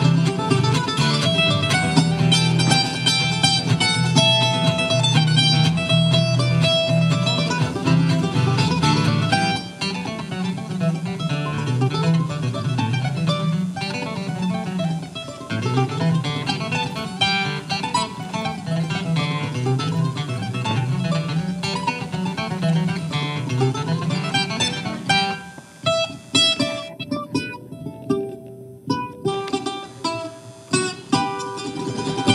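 Mandolin and acoustic guitar playing an instrumental tune together. The playing drops in level about ten seconds in, then thins out and gets quieter in the last few seconds.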